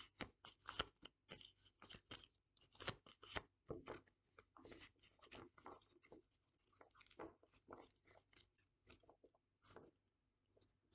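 A deck of round oracle cards being shuffled by hand: faint, irregular clicks and rustles of card stock sliding over card stock, thinning out after about six seconds as the deck is gathered into a stack.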